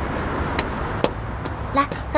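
Low, steady city street ambience with a rumble of distant traffic and a couple of light clicks. Near the end a young woman starts to speak.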